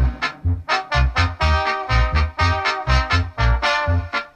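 A Mexican band's music, an instrumental passage of short, separated notes over a steady bass beat.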